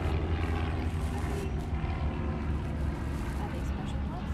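Quiet talking between two people over a steady low rumble.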